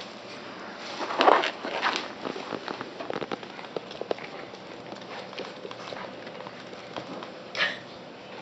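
Two West Highland White Terrier puppies play-fighting over a toy: scuffling and scattered clicks of paws and claws on a wooden floor, with louder bursts of puppy noise about a second in and near the end.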